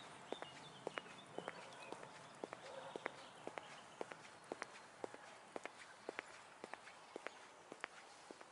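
Footsteps on a paved path: hard shoe soles clicking in quick heel-and-toe pairs, about two steps a second, at a steady walking pace.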